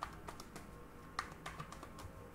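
A deck of tarot cards being shuffled by hand: light, irregular clicks and snaps of the cards striking one another, a few in each second.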